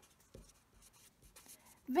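Felt-tip marker writing on paper: faint, short scratching strokes as a line of words is written.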